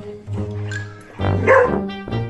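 Background music, with a dog barking once about one and a half seconds in, the loudest sound.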